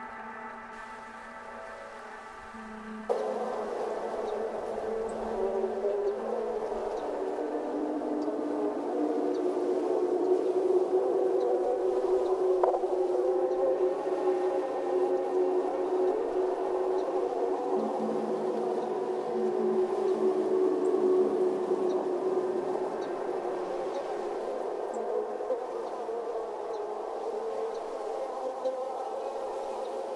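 Ambient drone soundtrack: a steady chord of held tones, then about three seconds in a louder, dense droning texture cuts in suddenly and carries on with long sustained tones beneath it.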